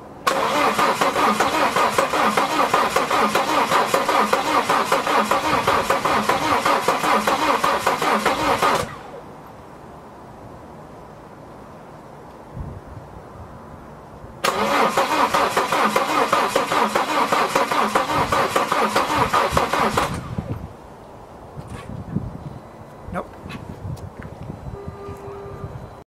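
Volvo D5 five-cylinder diesel being cranked by its starter twice, about eight seconds then about six, with a rhythmic churn that stops abruptly each time without the engine catching. The engine cranks but won't start, which the owner traced to air in the fuel lines from incomplete priming.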